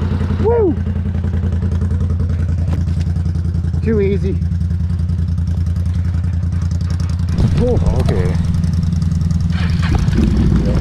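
Can-Am Renegade XMR 1000R ATV's V-twin engine running at a steady low speed, holding one even pitch while the quad crawls along the trail. A few short voice calls rise and fall over it, about half a second in, around four seconds in, and near the end.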